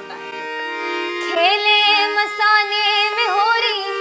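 Steady drone of held harmonium-like notes, joined about a second and a half in by a woman's voice singing a Holi folk song, with long notes that waver in pitch.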